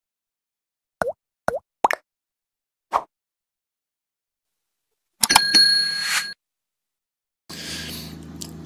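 Sound effects of an animated subscribe reminder: four short, bubbly plops in the first three seconds, then a click and a brief ringing chime a little past the middle. Faint room noise comes in near the end.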